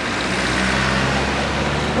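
A motor vehicle passing close by: a low engine hum with road noise that swells in the middle and then eases off.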